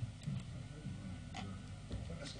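A few light, irregular clicks at a computer as a PowerPoint slide show is started, over low room murmur.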